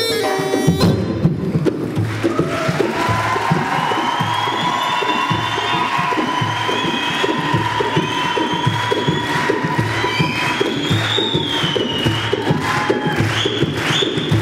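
Live Bushehri folk music: a neyanban (southern Iranian bagpipe) melody breaks off about a second in, leaving a steady drum beat under audience cheering with high, shrill gliding calls.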